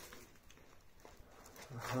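Quiet room tone with a few faint clicks and taps, then a man's voice saying "uh-huh" near the end.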